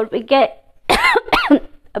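A woman coughs once about a second in, a sudden cough running into a short voiced tail. She has a cold that has not fully cleared.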